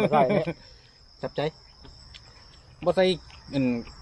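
Crickets chirring in one steady high-pitched note throughout, with short stretches of talk over them.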